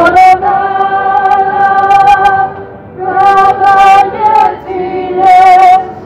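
A group of women singing a song together in long held notes, with a violin playing along. There is a short break in the singing about halfway through.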